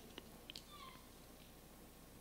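Near silence: a low steady hum, with a faint click and a faint, short falling tone within the first second.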